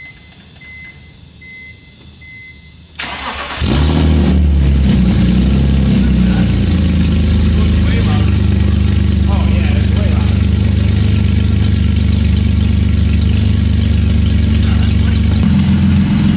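BMW E46 330Ci's M54 3.0-litre inline-six cold-started through headers and mid pipes with the catalytic converters deleted. After a few faint chime beeps, the starter cranks briefly about three seconds in. The engine catches with a flare of revs and settles into a loud, steady fast idle, which the crew judges not bad at all, close to normal.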